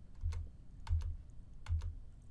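Computer keyboard keys pressed a handful of times, mostly in quick pairs, each tap with a dull knock, stepping a slide animation forward.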